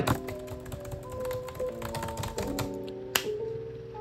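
Fast typing on a computer keyboard, a rapid run of clicks with one louder click about three seconds in, over background music with held notes.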